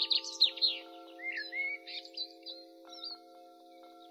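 Soft background music: a held chord of several steady tones, with bird chirps over it during the first three seconds.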